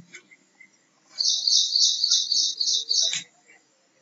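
A small bird chirping in a quick, even run of high notes, about four a second, starting about a second in and lasting about two seconds.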